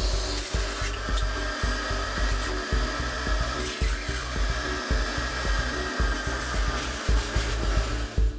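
Shop-Vac 8-gallon, 5.5 peak HP stainless steel wet/dry vacuum running steadily with a motor whine, its hose slurping water out of a full sink. Background music with a beat plays underneath.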